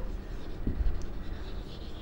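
A marker pen writing on a whiteboard, stroking out words quietly.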